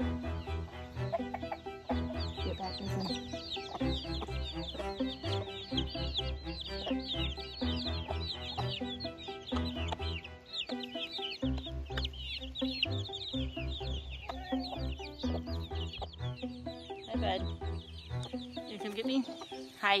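Baby chicks peeping continuously in short, high, falling notes, many a second, with hens clucking around them, over background music with a steady beat.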